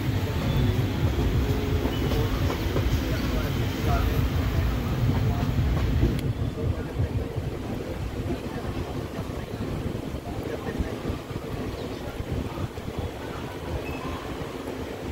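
Moving passenger train heard from an open coach doorway: a steady rumble of wheels on the track with rushing air. The sound becomes quieter and duller about six seconds in.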